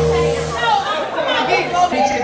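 Indistinct voices chattering in a large hall. A held music chord with a bass note stops about half a second in.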